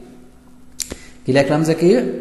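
A single sharp click just under a second in, then a man's voice speaking from about a second and a quarter.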